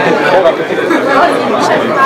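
Many voices talking at once: the general chatter of a room full of teenagers.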